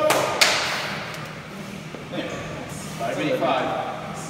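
A single sharp thump about half a second in, with a short echo in a large room, followed by indistinct men's voices.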